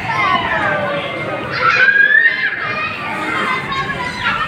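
Children's voices in a busy play area, several calling and shrieking over one another, with one high drawn-out squeal about halfway through.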